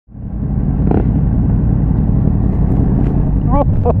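Motorcycle engine running steadily while riding along the road, heard from the bike with road and wind rumble; the sound fades in at the very start. A person laughs near the end.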